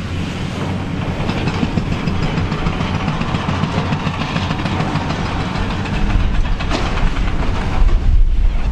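High-reach demolition excavator at work: its diesel engine running under load while the demolition jaws crush concrete and debris rattles down. The low rumble grows heavier about six seconds in, with a sharp crack just before the end.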